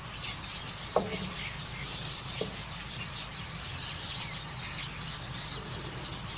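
Birds chirping, many short high chirps overlapping throughout, with one louder short falling call about a second in and a fainter one a little later, over a steady low hum.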